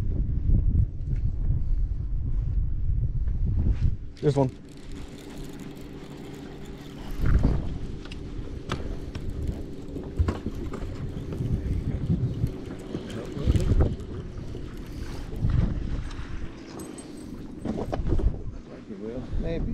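Wind buffeting the microphone for about four seconds. Then a steady low hum with scattered knocks and clicks of rod and reel handling while a bass is fought to the boat.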